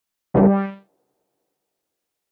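A single short comic sound effect: one pitched note with a sudden start that dies away in about half a second.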